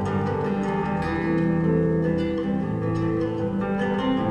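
Lever harp and acoustic guitar playing a duet, plucked notes ringing over one another without a break.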